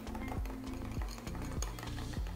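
Background music, under which a small whisk stirs mayonnaise and sriracha in a small bowl, with faint clinks of the whisk against the bowl.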